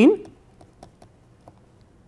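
A stylus tapping and clicking on a pen tablet's surface during handwriting: light, irregular clicks every few tenths of a second, just after a word ends.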